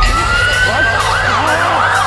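Emergency-vehicle sirens, more than one sounding together: a rising wail in the first second, then a fast up-and-down yelp, over a steady low hum.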